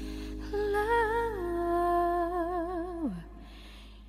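Soft pop ballad recording: a voice holds one long, wordless-sounding note with vibrato over sustained low accompaniment, then slides down and stops about three seconds in, leaving only the quiet backing.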